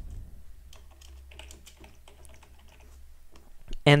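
Computer keyboard typing: a quick, irregular run of key clicks as a word is typed, over a low steady hum.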